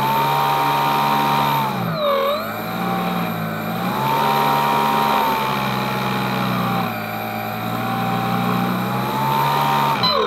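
Electric motor spinning an air propeller with a steady whine that drops sharply in pitch about two seconds in, then sags and recovers a few more times. Each dip is the transmitter's stability control cutting the throttle as the vehicle is turned.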